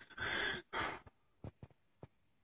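A person sighing close to the microphone: two breathy pushes of air, one right after the other in the first second, followed by a few faint clicks.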